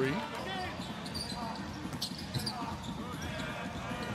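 Basketball game sounds on a hardwood court: a ball bouncing, scattered knocks and a few short high sneaker squeaks.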